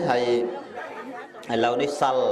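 Speech only: a man talking in Khmer, with a short lull about halfway through.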